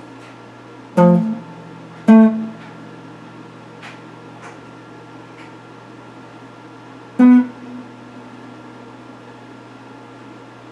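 Electric guitar played sparsely: three separate plucked notes, about one, two and seven seconds in, each ringing out briefly and fading. A steady low hum runs underneath.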